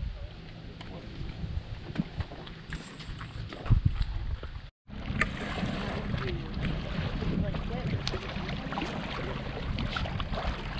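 A few sharp knocks and a loud thump about four seconds in, then a brief dropout. After it, small waves lap against a rocky lakeshore, with a low wind rumble on the microphone.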